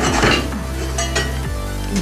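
Several sharp metallic clinks and knocks of hand tools being picked up and handled, over background music with a steady bass.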